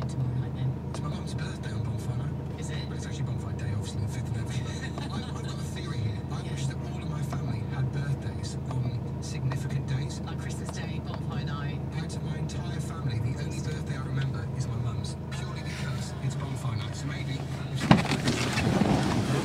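A Mercedes-Benz C200 CDi's 2.1-litre four-cylinder diesel engine idling steadily, heard from inside the cabin.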